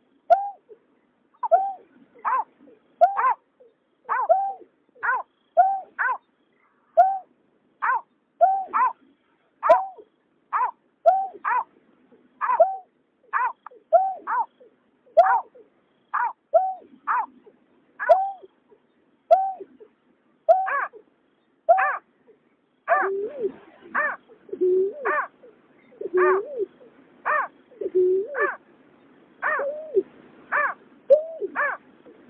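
Greater painted-snipe calling: a long series of short hooting notes, about one to two a second. From about 23 seconds in, a second, lower-pitched hooting call alternates with the first.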